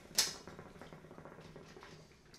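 Hookah being drawn on: a brief sharp hiss at the start, then the faint, steady rapid bubbling of the water base as the smoke is pulled through.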